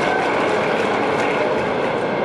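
A crowd applauding steadily, a dense even wash of clapping that thins out just after the end as the speech resumes.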